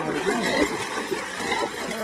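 A dog splashing as it wades through shallow water, with people's voices talking over it.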